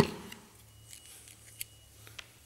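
A sharp plastic click, then a few faint small clicks and handling noise. The electronic parking brake module's motor-and-gearbox assembly is being slid off its cable pull and lifted out of its plastic casing.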